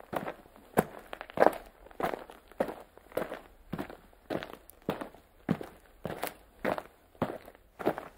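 Footsteps at a steady, even pace, a little under two steps a second, each a crisp, sharp step.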